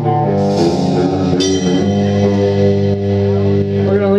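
Live band playing: electric guitar chords ringing out over bass guitar, with a fresh strum about half a second in and another near one and a half seconds.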